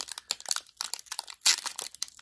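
Foil wrapper of a Pokémon trading card booster pack crinkling in the fingers as it is worked open, a run of crackles with the sharpest, loudest one about one and a half seconds in.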